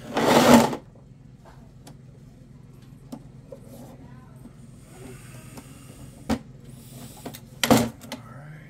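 A brass stuffing tube is handled and slid against a fibreglass boat hull. There is a rough scrape at the start, a few faint clicks and taps, and another short scrape near the end, all over a steady low hum.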